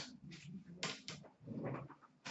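A few short rustling handling noises about half a second apart, typical of card boxes and packaging being moved on a table.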